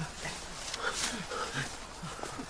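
A man breathing hard in short grunting pants, with a brief rustle of leaves about a second in.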